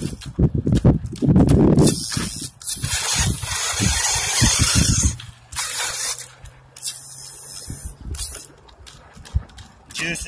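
Cheap 1/10-scale RC rock crawler stuck in a hole, its small electric motor running and its tyres spinning in loose dirt, throwing grit in hissing spurts, with low thumps at the start. The crawler is running on a low battery.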